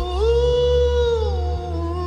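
House music track playing: a long sung vocal note that slides up, holds and slides back down, wavering slightly near the end, over a pulsing bass beat.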